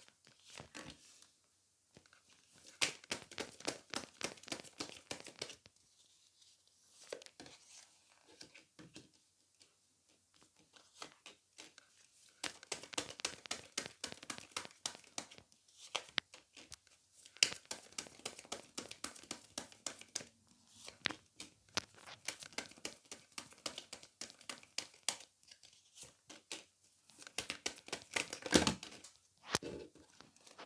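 A deck of tarot cards being shuffled and laid out on a table by hand: bursts of rapid papery flicking and slapping, broken by short pauses.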